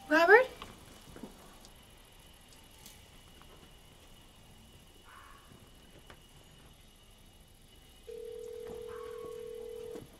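A loud, short cry rising in pitch at the very start. Near the end a steady single electronic tone from a mobile phone begins and holds.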